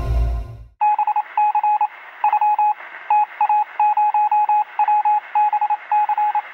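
Electronic music cuts off in the first second. Then a single steady beeping tone is keyed on and off in a Morse-code pattern of short and long beeps, over a thin radio-like hiss.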